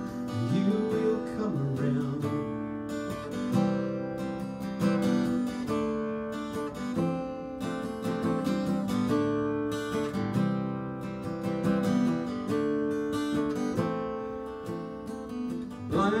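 Steel-string acoustic guitar strumming chords in a steady rhythm, an instrumental passage of a folk-rock song.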